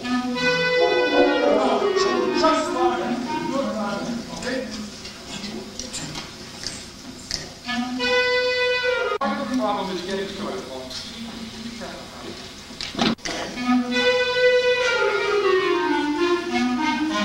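School concert band playing the same short passage three times, each entry a held chord that falls away in a descending line, the way a section is taken back over its part in rehearsal.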